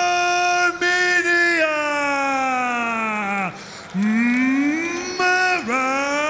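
Male ring announcer's drawn-out, sung-like call of the country name "Armenia": a long held vowel that slowly falls in pitch over about three and a half seconds. After a brief dip a second call rises, and a third is held near the end.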